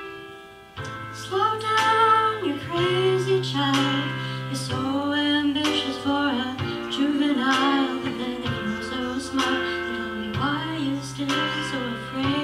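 A young female vocalist singing a song into a microphone over instrumental accompaniment, with long held low notes under her melody; her voice comes in about a second in and carries on with vibrato on the held notes.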